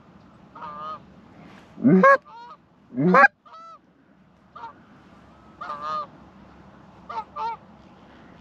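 Hand-blown goose call imitating Canada geese, working two geese overhead to coax them into landing: a series of short honks and clucks, with two loud rising honks about two and three seconds in and softer honks between them.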